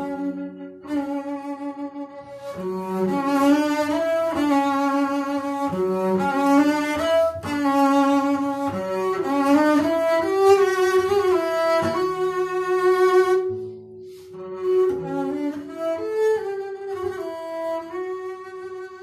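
Solo double bass played with the bow: a line of sustained, connected notes, mostly high in the instrument's range. The playing drops away briefly about fourteen seconds in, then picks up again.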